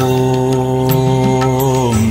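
A male voice chanting a mantra, holding one long steady note, over devotional music with light percussion; the note ends right at the close.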